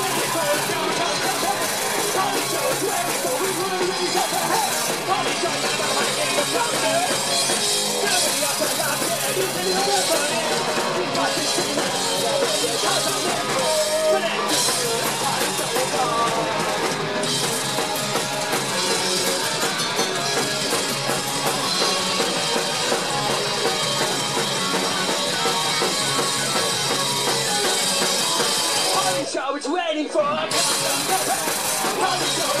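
Rock band playing live: electric guitars, bass and drum kit with a sung lead vocal. The music drops out briefly just before the end.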